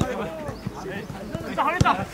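Footballers shouting to one another during a training drill, with a few sharp thuds from feet and the football on grass, the loudest near the end.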